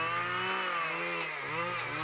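Petrol chainsaw running as it cuts side branches from a conifer stem. Its pitch rises and then falls again once.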